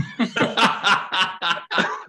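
Men laughing together: a quick run of ha-ha pulses that gets softer toward the end.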